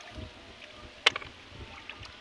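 Low rumbling wind noise on the microphone, with one sharp click about a second in.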